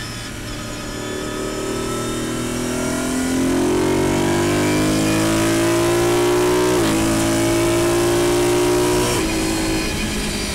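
BMW car engine accelerating: its pitch climbs steadily and grows louder, breaks briefly about seven seconds in, climbs again, then drops near the end.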